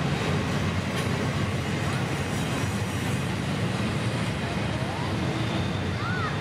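Double-stack intermodal freight train rolling past, its well cars' wheels on the rails making a steady, unbroken rumble.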